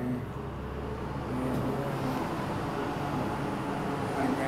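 Low rumble of a motor vehicle running, easing off about two seconds in.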